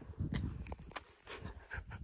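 A person breathing hard in short irregular breaths, with wind rumbling on the microphone.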